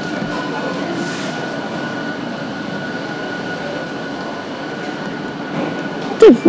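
Steady hum and hiss of a large shopping-mall interior, with a thin steady high tone running through it.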